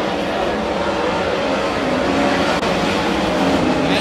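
Several 410 sprint cars' V8 engines running at race speed around a dirt oval, a loud steady blare whose pitch wavers as the cars go through the turns.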